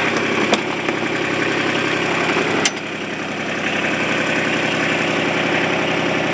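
Kubota RTV900's three-cylinder diesel engine idling steadily, loud. Two sharp clicks come through, one about half a second in and one a little before three seconds in.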